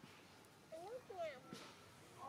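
A young macaque giving a few short cries that rise and fall in pitch, about a second in.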